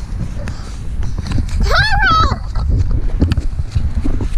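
Wind rumble and knocking from a handheld camera as the person filming moves quickly across grass, with one high, wavering call about two seconds in.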